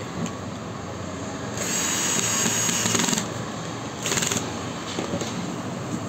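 A handheld power tool runs in two short bursts: one of about a second and a half, then a brief one of about half a second, with small handling knocks around them.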